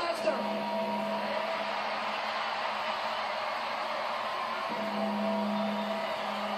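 Wrestling broadcast audio playing from a TV: steady arena crowd noise with music and some speech beneath it, and a sustained low tone that drops out and comes back near the end.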